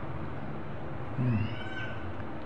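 A faint, brief high-pitched call in the background, rising and then falling once, with a short low voiced hum just before it.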